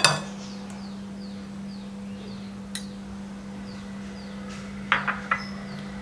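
A few light glass clinks as an egg is tipped from a small glass bowl into a glass mixing bowl: a single click about three seconds in and a short cluster about five seconds in. A steady low hum runs underneath.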